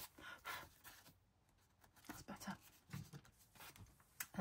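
Faint rustling and handling of paper as a paper envelope is fitted into a journal page, with a soft click at the start. A few faint murmurs follow in the second half.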